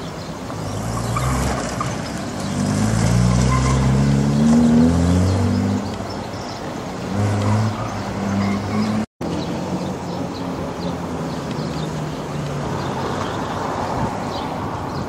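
Jaguar E-Type roadster's straight-six engine revving as the car accelerates through a cone course, its pitch rising over a few seconds, with a second burst of revs shortly after. Just after nine seconds the sound cuts out for an instant, then a quieter car engine runs on steadily.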